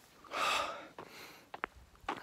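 A man breathing hard: one loud, heavy breath about half a second in, followed by a few small clicks. He is winded from a short climb, and he says the oxygen is low.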